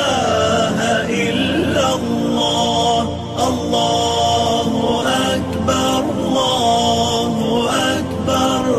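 Melodic Islamic vocal chant, a voice holding long notes with ornamented turns over a steady backing.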